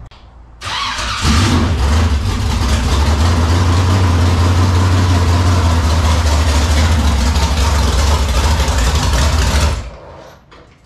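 IMCA modified race car's V8 engine cranked over and catching about a second in, then running loud and steady at a low idle before cutting off abruptly just before the end.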